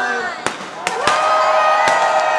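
Confetti cannons going off with three sharp bangs over about a second and a half, while from about halfway in a loud voice holds one long note.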